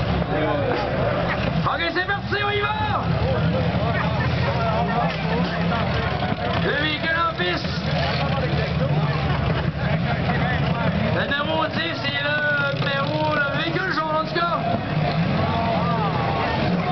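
Demolition derby cars' V6 engines running with a steady, rough low rumble, with voices talking over it at times.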